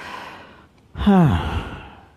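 A man's audible breath in, then about a second in a long voiced sigh that falls in pitch and fades away.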